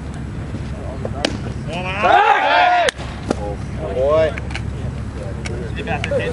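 A voice shouting a long, drawn-out call at a baseball game, then a shorter shout about two seconds later, over a steady low outdoor rumble. There is a sharp crack about a second in, and another as the long shout cuts off suddenly.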